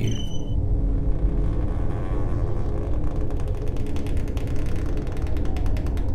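Horror-trailer sound design: a low rumbling drone with held tones underneath, and a rapid clicking that starts faintly, speeds up over the last few seconds and cuts off suddenly at the end.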